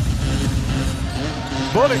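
Basketball dribbled on an arena's hardwood court over steady crowd noise.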